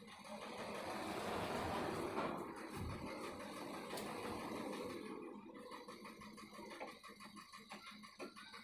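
A road vehicle passing outside, its noise swelling over the first two seconds and fading away by about five seconds in.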